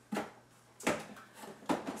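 Plastic cosmetic tubes put down into a cardboard box: three short knocks, a little under a second apart.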